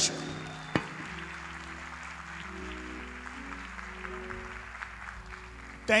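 Church band playing soft held keyboard chords under scattered audience applause.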